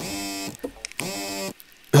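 Phone ringing with a buzzing electronic tone in two half-second pulses about half a second apart.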